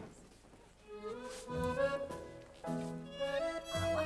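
A small band strikes up a light tune about a second in, a violin carrying the melody in held notes over a low accompaniment.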